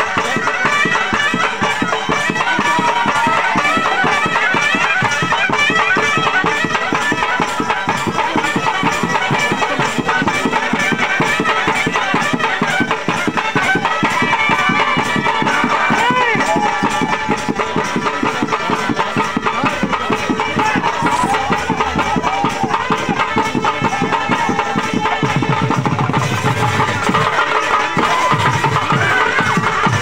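Live traditional Koya dance music: barrel drums beaten in a steady, dense rhythm under a reedy wind-instrument melody, with crowd voices mixed in.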